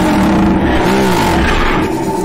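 A man laughing loudly around a shouted "way", over a steady held tone.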